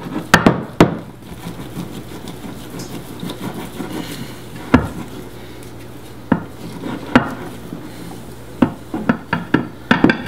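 Spatula stirring thick sourdough starter in a glass bowl, knocking against the glass: a quick run of knocks in the first second, scattered single knocks through the middle, and another quick run near the end, with soft stirring between.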